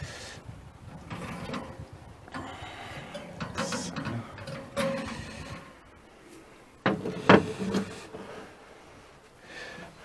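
Scraping and clattering of a baking dish being drawn out of a brick oven with a long-handled tool, with two sharper knocks about seven seconds in.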